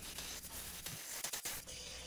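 Faint, even hiss of a gouge cutting a taper into a spalted pine spindle turning on a wood lathe, with shavings peeling off the tool.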